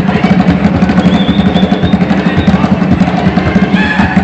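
Loud music with rapid, steady drumming.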